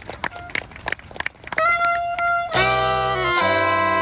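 A few scattered clicks, then a single saxophone note held from about a second and a half in. About a second later a saxophone ensemble of soprano, alto, tenor and baritone saxes comes in together on sustained chords, with low baritone notes underneath.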